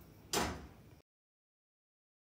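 One brief soft scuff about a third of a second in, fading away, then the sound cuts out to dead silence about halfway through.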